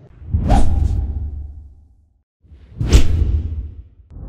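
Two whoosh transition sound effects. Each is a sharp swish over a low rumble that fades out over about a second and a half. The first comes just after the start and the second about two and a half seconds in.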